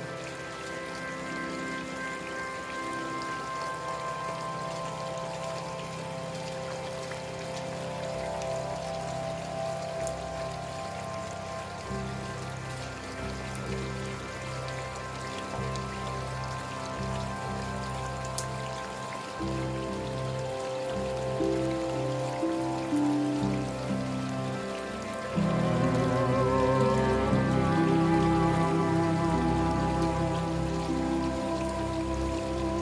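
Calm new-age music of long held notes over steady rainfall. The music grows louder about four seconds before the end.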